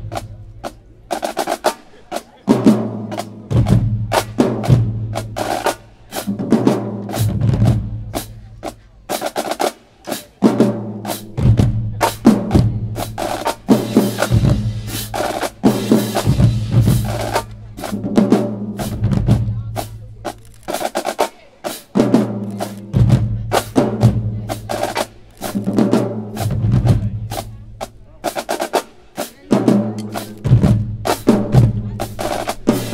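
Marching drumline playing together: snare drums with fast rolls, tenor drums, bass drums and crash cymbals in a driving, steady rhythm. The cymbals ring out in a longer wash about halfway through.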